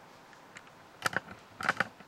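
Clicks from a laptop being operated: two quick sharp clicks about a second in, then three more in quick succession near the end.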